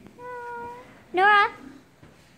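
A high-pitched voice: a soft, steady held hum, then about a second in a short, louder call that rises and falls in pitch, with no words in it.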